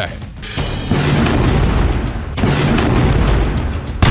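Dramatic news-package background music with deep booming rumbles, in two long swells, the second beginning about two and a half seconds in.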